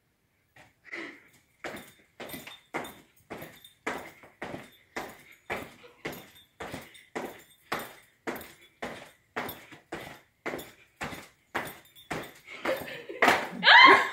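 Feet landing on a tiled floor from quick repeated jumps over a book, about two landings a second in a steady rhythm: a timed speed-jump exercise.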